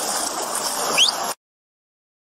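Rushing flash-flood water churning close to a body camera's microphone, a steady rush of noise. A short rising squeak about a second in, then the sound cuts off abruptly.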